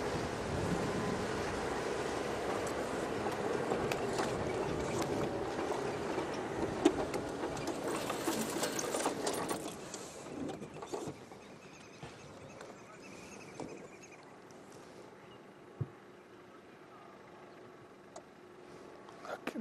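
An open safari vehicle's engine running and its tyres on a dirt track while driving, a steady drone that drops away about ten seconds in as the vehicle slows and stops. Quiet bush background follows, with a single faint knock near the end.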